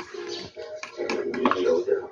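Indistinct background voices, with a few light clicks of a plastic gadget being handled.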